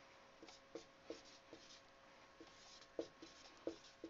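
Dry-erase marker writing on a whiteboard: faint, short squeaks, about eight, at an uneven pace as each letter stroke is drawn.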